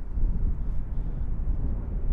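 Piston engines of two Second World War fighters running at takeoff power during their takeoff roll together, a steady, deep rumble.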